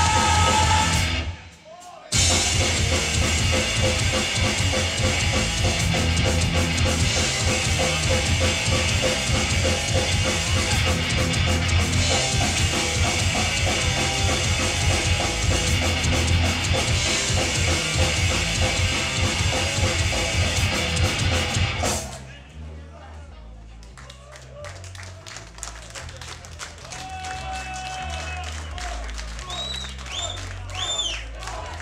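Hardcore punk band playing live: drum kit, distorted guitars and bass with a shouted vocal, stopping briefly a couple of seconds in before crashing back in. The song ends abruptly about 22 seconds in, leaving crowd noise and voices.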